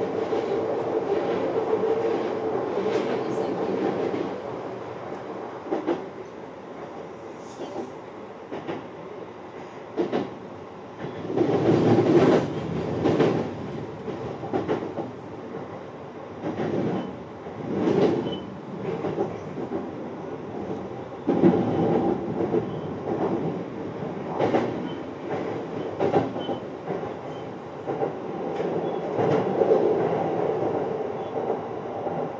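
Sotetsu 12000 series electric train running at speed, heard from the driver's cab: a steady running noise with sharp clacks of the wheels over rail joints and points. There are louder surges of noise about a third of the way in and again past the middle, as it runs through a station.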